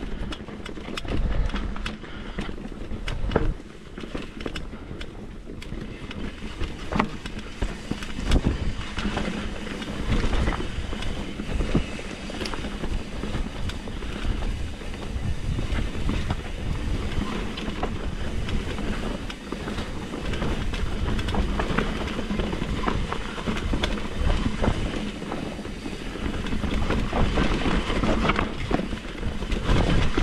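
Mountain bike riding down a rocky dirt singletrack: tyres rolling and crunching over dirt and stones under a continuous low rumble, with the bike rattling and knocking over the rough ground.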